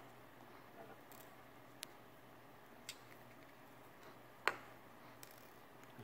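Small clicks from a plastic electrical plug housing being handled and pressed together over its wires: a few faint ticks, with one sharper click about four and a half seconds in.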